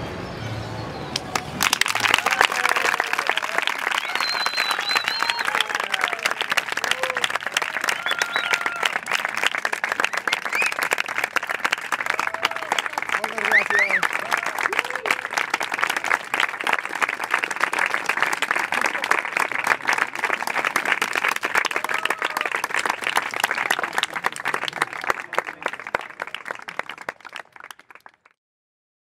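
A live audience applauding and cheering, with scattered whoops and shouts over dense clapping. The applause starts about a second and a half in and dies away near the end.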